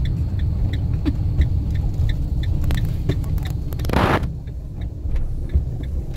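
Road and engine rumble inside a moving vehicle's cabin as it turns. Over it the turn signal ticks steadily, about two and a half times a second. A short swishing noise comes about four seconds in.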